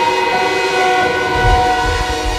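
String ensemble of violins, violas, cellos and double basses holding sustained chords, a new note entering shortly in, with a low rumble coming in underneath about a second and a half in.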